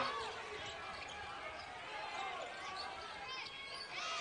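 Faint game ambience on a hardwood court: a basketball being dribbled, with distant voices in the gym.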